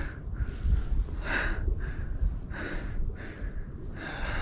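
A person breathing audibly, about one soft breath every second and a half, over a low rumble on the microphone.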